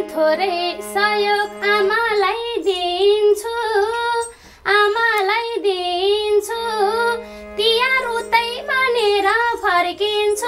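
A woman singing a Nepali dohori folk song in a high voice, in ornamented phrases with bending pitch, over steadily held harmonium notes; the singing breaks off briefly a little before the middle.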